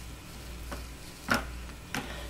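About three light clicks and knocks, the clearest just past halfway, as soap-making containers and utensils are handled at the batter bowl, over a steady low hum.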